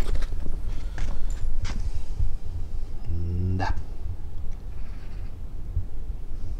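A German Shepherd gives one short vocal sound about three seconds in, its pitch sweeping up at the end, over a low steady rumble.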